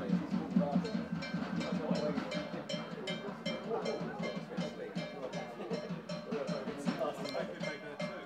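Football supporters chanting together to a steady, sharp percussion beat of about three to four strokes a second, like a drum and bell kept going by a group of fans.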